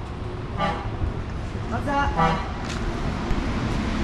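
Road traffic rumbling, with short car-horn toots: one about half a second in and a couple more around two seconds in.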